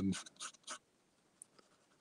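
Ink pen nib scratching on paper in a few short, quick strokes in the first second, with a faint tick about halfway through.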